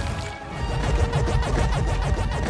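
Film soundtrack: score music mixed with loud crashing and smashing effects of rock and debris breaking apart. There is a short dip about a third of a second in, then heavy low crashes.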